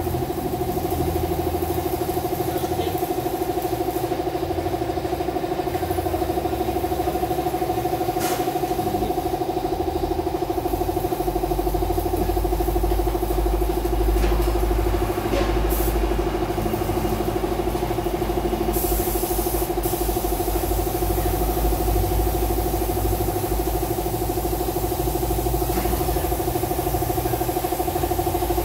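A machine motor running steadily with a constant hum, joined by a low rumble about midway, with a couple of faint knocks and a brief hiss.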